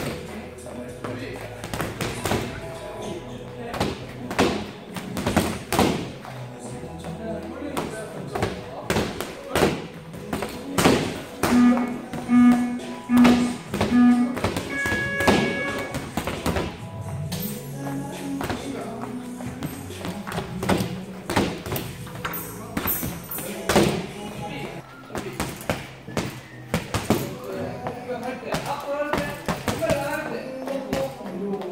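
Boxing gloves landing on a padded punching bag in quick, irregular combinations of thuds and slaps, over background music.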